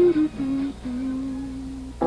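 Soft music: a single wordless melody line of a few notes, stepping down and ending on one long held low note.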